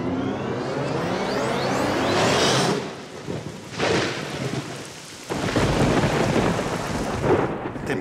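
Thunderstorm: steady heavy rain with thunder, swelling twice and then breaking into a deep, loud rumble about five seconds in.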